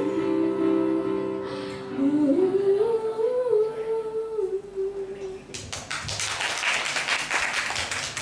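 A young woman's voice sings the final held notes of a slow pop ballad into a microphone over soft backing music. About five and a half seconds in, the singing stops and audience applause breaks out.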